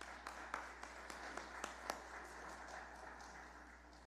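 A small congregation applauding at the end of a piano piece, a light patter of clapping with some louder individual claps in the first two seconds, thinning out toward the end.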